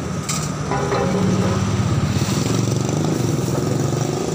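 An engine running steadily at idle, a low even drone.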